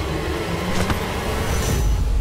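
Low, steady rumbling drone of a dramatic background score, with a sharp hit a little before the middle and a rising whoosh near the end.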